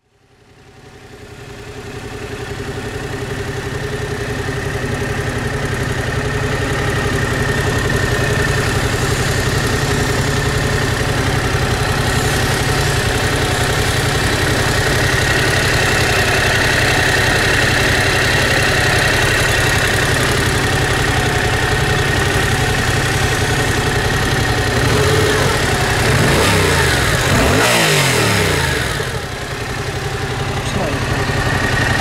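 Yamaha Tracer 700's parallel-twin engine idling steadily in neutral, then given a few quick throttle blips near the end.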